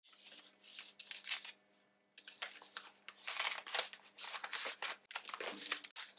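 Paper and plastic film of a self-seal sterilization pouch crinkling and tearing as its indicator strip is pulled off and a bandage roll is slid inside: a run of short crackles and rustles with a brief pause about two seconds in.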